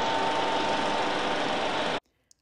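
A steady mechanical rattling noise with a faint hum through it, used as a sound effect for a section title card. It cuts in and stops abruptly, lasting about two seconds.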